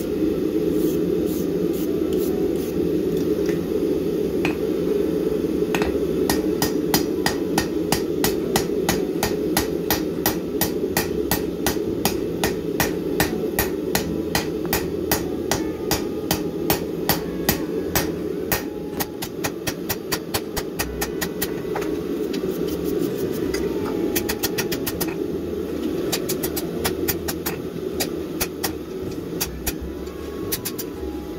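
Hand hammer striking red-hot steel bar stock on an anvil, drawing out the reins of a pair of blacksmith's tongs. A few scattered blows come first, then a fast, even rhythm of about three blows a second from about six seconds in. A steady low hum runs underneath.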